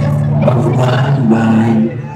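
Live rock band playing amplified on stage, a low chord held steady under a few shifting guitar and keyboard notes, recorded from within the crowd.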